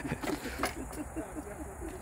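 Faint voices in the background over a steady low rumble, with a single sharp click about a third of the way in.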